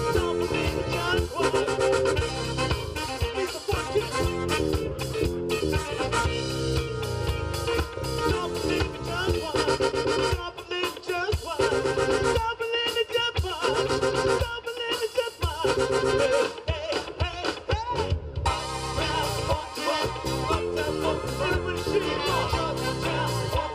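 A live band playing a song on drum kit, electric guitar, keyboard and saxophone.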